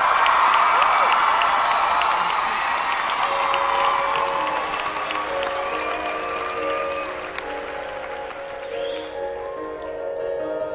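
Concert audience applauding and cheering, with whistles. The applause slowly fades, and from about three seconds in a keyboard begins playing sustained notes under it.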